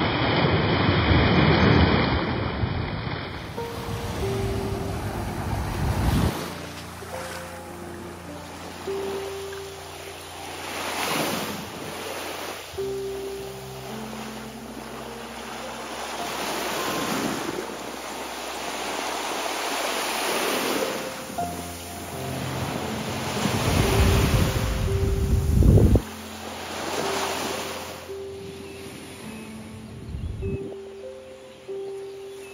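Small surf breaking and washing up on a sandy beach, each wave swelling and falling away every few seconds, with the loudest wash near the start and another about twenty-five seconds in. Soft background music of held notes plays over the surf.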